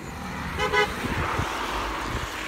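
A car passing on the road, its tyre noise swelling through the middle and easing off, with a short pitched sound about half a second in.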